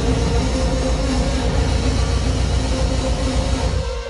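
Loud, dense, distorted breakcore played live through a club sound system: a harsh wall of noise over heavy bass, cutting off abruptly at the very end.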